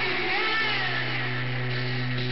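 Live rock band playing loudly. A low note is held under a high line that slides up and wavers, like a bent electric-guitar note or a sung wail.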